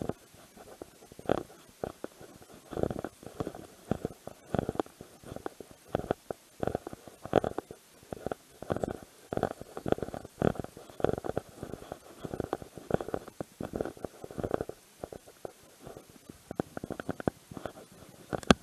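Muffled, irregular rubbing and knocking of clothing and handling against a body-worn action camera's microphone as it moves through a crowd.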